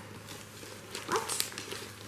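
Handling of a fabric booster seat and its plastic wrapping: light rustling and a few short scuffs about a second in, with one brief high voice sound at the same moment.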